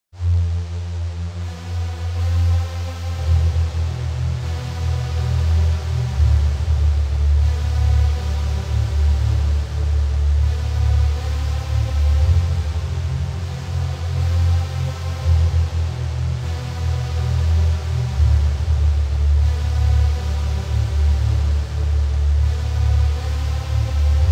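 Instrumental electronic music: held synthesizer chords over a strong, steady bass, the chords changing every few seconds.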